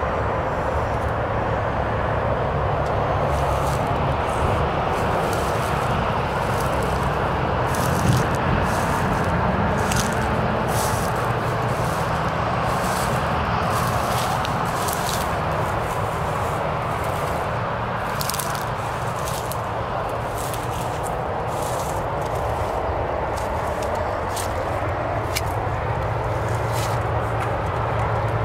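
Footsteps crunching through dry grass and debris, irregular steps about one or two a second, over a steady rushing background noise with a low hum.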